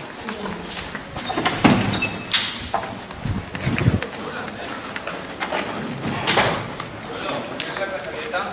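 Hurried footsteps on a hard floor, irregular sharp steps, with indistinct voices alongside.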